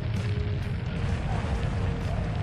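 Documentary background music holding a faint steady note over a continuous low rumble, a sound effect for the spacecraft capsule's fiery entry into the Martian atmosphere.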